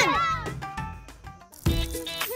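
Background music: held notes fade away, then a new louder phrase comes in sharply near the end. A short gliding, voice-like sound trails off at the very start.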